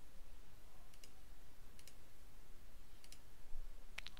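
A few faint clicks of a computer mouse, spaced about a second apart, over a low room hum.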